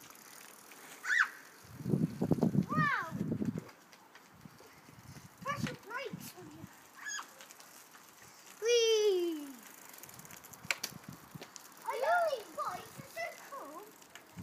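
Young children's high-pitched shouts and calls, one a long falling call about nine seconds in, with a rumbling burst of noise about two seconds in.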